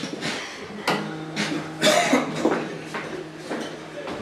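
Acoustic guitar: a low string is plucked about a second in and left to ring for about two seconds, among several sharp knocks and a short cough-like noise.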